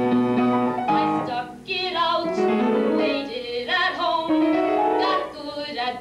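A woman singing a show tune with piano accompaniment, holding some notes and sliding up into others.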